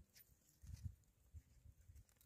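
Near silence, with a few faint low thumps about a second in.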